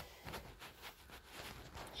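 Faint, irregular rustles and soft taps of loose paper and a sketch pad being handled and set down.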